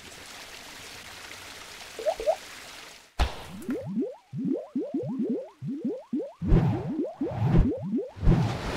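Animated logo sting sound effects: a steady whooshing hiss for about three seconds, then a quick run of short rising pitch sweeps, ending in louder swishes.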